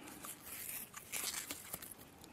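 Faint crinkling and rustling of a pellet-filled PVA bag being handled as PVA tape is wound around it, in a few short scratchy bursts.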